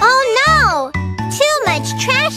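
High-pitched cartoon voices exclaiming, with swooping rises and falls in pitch, over children's background music.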